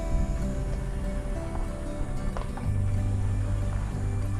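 Background music with held notes over a bass line; a deeper, louder bass note comes in about two-thirds of the way through.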